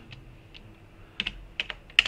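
Computer keyboard typing: a handful of separate keystrokes, sparse at first and quicker in the second half, with a sharper one at the very end.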